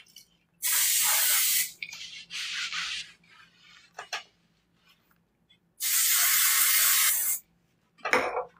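Aerosol self-tanner spray can hissing in three bursts: a loud one of about a second, a shorter, fainter one, then a loud one of about a second and a half.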